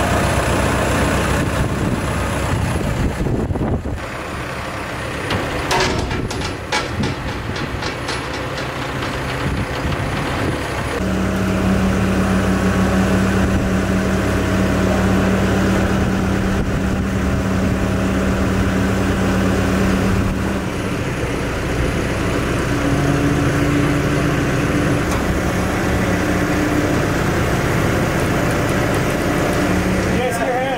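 Heavy machinery at work: a telehandler's diesel engine running, with a run of metal clicks about six seconds in and a steady low hum held for about ten seconds in the middle, then shorter changing tones.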